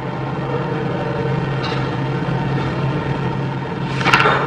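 Steady low hum with an even hiss above it, continuous and unchanging: background noise of the recording setup with no speech.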